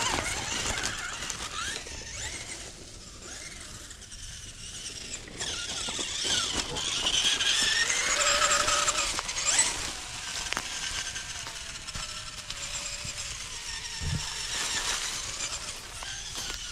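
Whine of a 1/18-scale Axial Capra UTB18 RC crawler's small brushed electric motor and gearing, rising and falling in pitch with the throttle and climbing sharply near the middle, as the tyres crunch over dry leaves and sticks.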